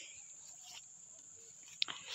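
Crickets in a steady high-pitched drone, with a short click near the end.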